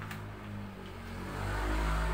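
Low rumble of a vehicle engine, growing louder in the second half.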